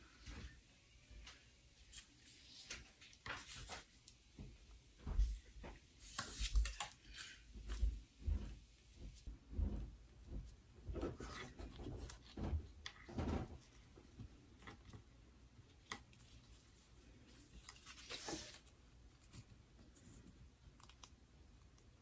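Irregular hand-handling noises: vinyl pieces and double-stick tape rustling and crinkling as they are fitted, peeled and pressed by hand, with scattered light clicks and taps, mostly in the first half.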